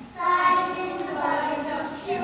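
A group of pre-school children singing a song together, with held notes that move up and down in pitch.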